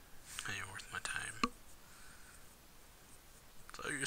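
A voice speaking softly, close to a whisper, for about a second starting about half a second in, with low background hiss after it and more speech starting near the end.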